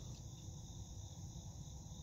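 Faint, steady high-pitched chorus of insects, a continuous trilling drone, with a low rumble underneath.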